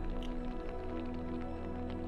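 Film score music: a sustained, slowly shifting chord over a deep held bass note.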